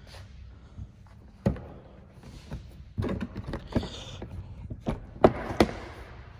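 Scattered clicks and knocks of a hard plastic access panel on a Polaris RZR's rear bed being unlatched and lifted off, with rustling handling noise; the sharpest click comes about five seconds in.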